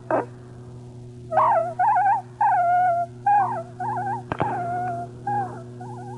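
Electronic music: a wavering, gliding high melody line, voice- or theremin-like, in short phrases over a steady low drone, with a sharp click about two-thirds of the way through.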